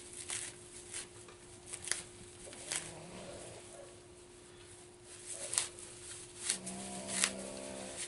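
Dry tulip poplar bark fibers being pulled apart and rubbed between the hands, giving soft, scattered crackling rustles a few times a second at irregular spacing. A faint steady hum runs underneath.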